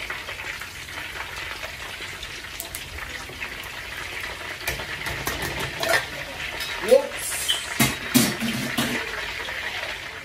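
Whole pork leg (crispy pata) deep-frying in a wok of hot oil: a steady sizzle with scattered sharp pops and crackles, busiest and loudest from about five to nine seconds in.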